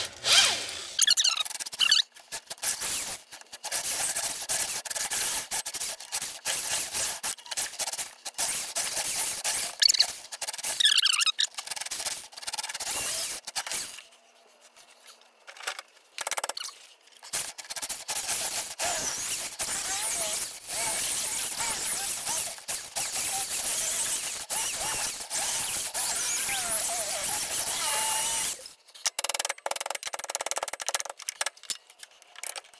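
Cordless drill boring through the old rubber upper control-arm bushing in a Ford 8.8 rear axle housing, with squeals as the bit rubs in the rubber. It stops for about two seconds midway, then runs again until shortly before the end.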